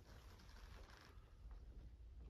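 Near silence, with a faint low rumble and a few faint ticks.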